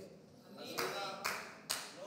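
Congregation applauding briefly, starting about half a second in, with a few sharper claps standing out before it thins out.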